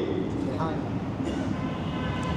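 A pause between sentences of a man's speech, filled by a steady low rumbling background noise, with a faint voice in the second half.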